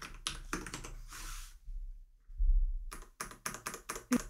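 Typing on a computer keyboard: a quick run of keystrokes, a low thump about two and a half seconds in, then another quick run of keystrokes near the end.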